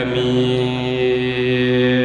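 Chanted recitation of a Mouride khassida, an Arabic religious poem, sung into a microphone: one long steady note held unbroken.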